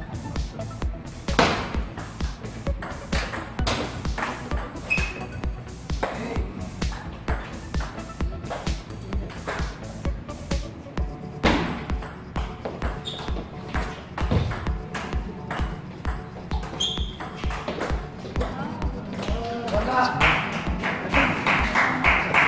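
Table tennis rally: the ball's sharp clicks off paddles and table, over background music with a steady beat. Voices come in near the end.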